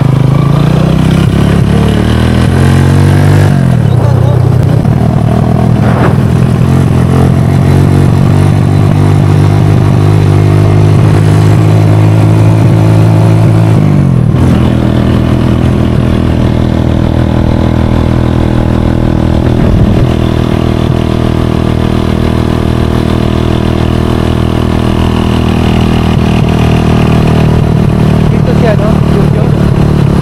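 Small motorcycle engine running under way with several people aboard, its pitch climbing as it accelerates, falling back sharply at gear changes about three and a half seconds in and again near the middle, then holding steady at cruising speed.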